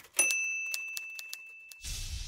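Intro sound effect: a typewriter bell dings once and rings down for about a second and a half over a few more key clicks. Near the end it is cut off by a whoosh with a low rumble.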